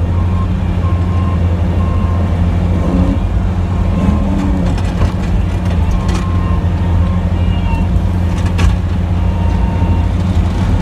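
Snowplow truck's engine running steadily under load while plowing, heard from inside the cab as a deep, even drone, with a few faint knocks.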